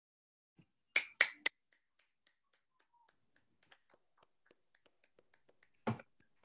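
Finger snaps heard over a video call, snapped in appreciation at the end of a poem: three sharp snaps about a second in, then scattered faint snaps, and one louder snap near the end.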